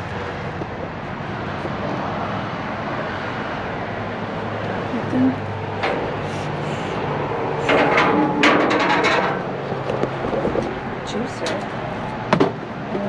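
Steady outdoor background noise with a low hum. About eight seconds in comes a short burst of rustling and knocks as a grabber tool works among the trash bags and boxes in a metal dumpster.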